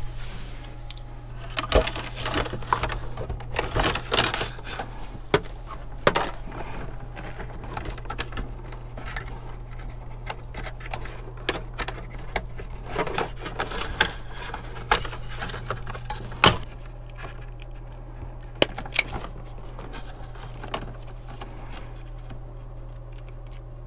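Hands working on 12-volt wiring in a cabinet compartment: wires rustling and being pulled through, with scattered plastic clicks and knocks, including a sharp click past the middle and two more close together near the end. A steady low hum runs underneath.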